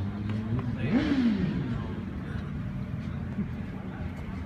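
A motor vehicle engine revs briefly up and back down about a second in, over a steady low engine hum.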